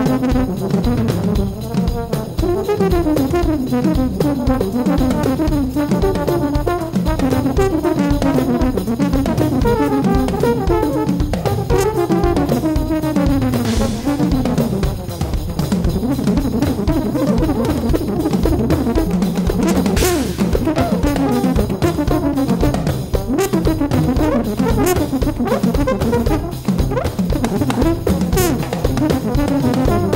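Jazz big-band recording of an Arabic-jazz march: a brass section playing a winding, rising-and-falling melody in unison over a busy drum kit, with occasional cymbal crashes.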